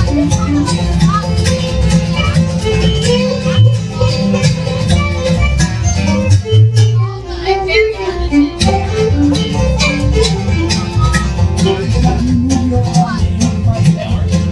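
Live bluegrass band playing an instrumental break between verses: fiddle, acoustic guitar, banjo and upright bass.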